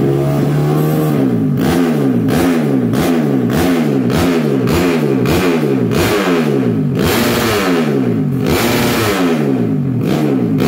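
Modified grasstrack motorcycle with a Gordon's racing exhaust, stationary and blipped over and over, its engine note rising and falling about twice a second while it is being tuned.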